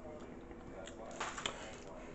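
A metal spoon clinking and scraping faintly against the stainless steel inner pot of an electric pressure cooker, a few light clicks about a second in.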